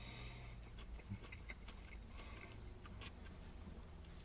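Faint chewing and mouth sounds of a person eating a wrap with a full mouth: small soft clicks scattered throughout, over a low steady hum.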